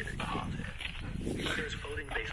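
A standard poodle vocalizing briefly, heard under a talking voice from spoken-word audio.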